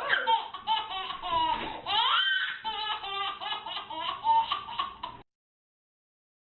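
A toddler laughing hard in quick repeated bursts, with high rising squeals. It cuts off suddenly about five seconds in.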